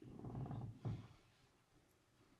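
A brief low, rough vocal sound, about a second long, then quiet room tone.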